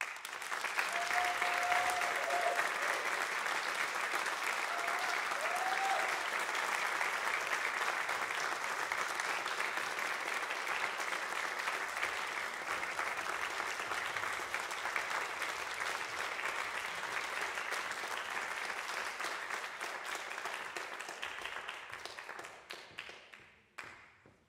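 Audience applause in a concert hall, starting suddenly at the end of a saxophone quartet's piece and dying away over the last couple of seconds. Two short high calls from the audience come through about one and five seconds in.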